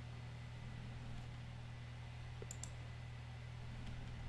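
Two computer mouse clicks in quick succession about two and a half seconds in, over a steady low electrical hum.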